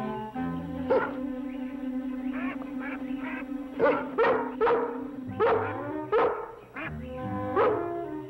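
Rough collie barking, a single bark about a second in, then a run of about seven or eight short barks from the middle to the end, over background music with held notes.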